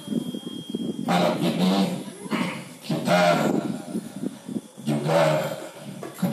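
A man's voice reciting a prayer aloud in three drawn-out phrases, with short pauses between them.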